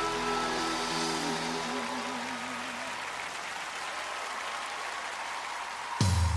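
The final held chord and a wavering sung note of a gospel song die away within the first two seconds. Steady audience applause from a live recording follows.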